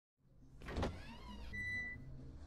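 A sliding glass door whirring open on its motor, with a steady high electronic beep starting near the end.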